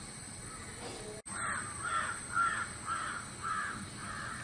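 A bird calling in a quick series of repeated calls, about two to three a second, starting a little over a second in after a brief break in the audio.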